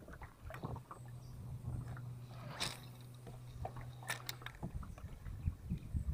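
Electric trolling motor humming steadily at low pitch, cutting off about four and a half seconds in, with scattered light clicks and knocks from the boat and tackle.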